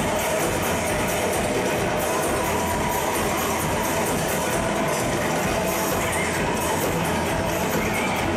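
Live psychedelic rock band playing through a club PA, drums and amplified instruments together in a dense, steady wash, as picked up by a camcorder's built-in microphone.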